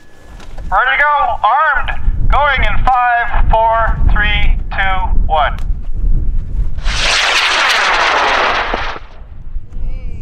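A run of short rising-and-falling whoops, about two a second, then about seven seconds in a solid-fuel high-power rocket motor lights with a two-second hissing roar that cuts off sharply as the motor burns out.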